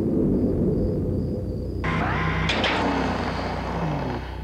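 Science-fiction spaceship sound effects: a low, steady rumble, joined about two seconds in by a loud hissing rush with a short rising tone.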